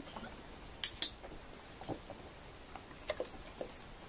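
Two sharp clicks close together about a second in, then a few softer clicks and light knocks, as a dog takes and chews a treat while standing on a wobble board.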